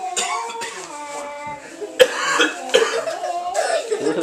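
Young girls' voices in short, broken bits, with a sudden sharp, loud burst about halfway through.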